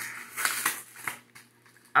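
A few short clicks and rustles of packaging being handled on a countertop.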